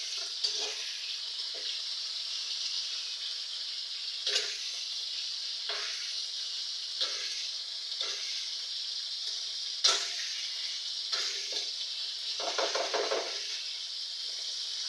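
Chicken with onion, garlic and tomato frying in oil in an aluminium wok, a steady sizzle. A utensil stirring the food scrapes and knocks against the pan every second or two, the sharpest knock about ten seconds in.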